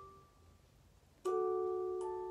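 Soft background music: the tail of a ringing chord fades out, and about a second in a new chord of several clear, sustained notes is struck and rings on.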